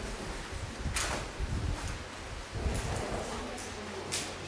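Faint room noise with one short, sharp sound about a second in and a few softer low bumps after it.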